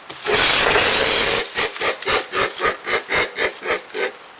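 Black vultures hissing as the chick feeds from the adult. There is one long, loud hiss, then a run of about ten short, rhythmic hisses at roughly four a second.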